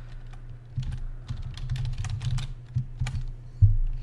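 Typing on a computer keyboard: a run of irregular key clicks, with one heavier keystroke thump near the end, over a steady low hum.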